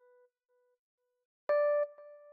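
Single electric piano notes from the Lounge Lizard EP-4 plugin, previewed one at a time as they are placed in a piano roll. The tail of one note fades out in soft repeats, then a new, slightly higher note sounds about one and a half seconds in.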